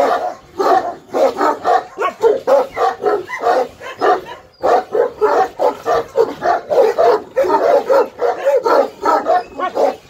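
Two Malakli (Turkish mastiff) dogs barking at each other through kennel bars in quick short barks, about three a second, with a brief pause about four and a half seconds in.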